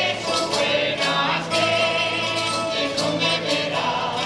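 Mixed folk choir singing a habanera in unison with a rondalla of strummed and plucked guitars and lute-type strings accompanying.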